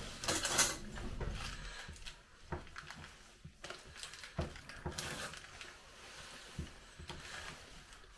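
Quiet eating and handling sounds: scattered soft clicks and crunches as cheese twists are eaten with a dip.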